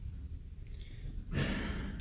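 A low steady hum, then, about a second and a half in, a man's audible in-breath as he draws breath to speak.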